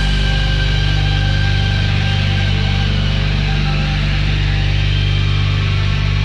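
Rock band's final chord held as a loud, steady wall of sound with heavy low notes, its upper ring slowly thinning out as it sustains.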